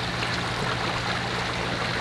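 Steady rush of running water at a backyard fish pond, with a low steady hum underneath.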